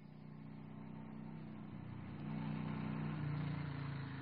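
Motorcycle engine running as the bike approaches, growing steadily louder, its pitch shifting slightly about halfway through.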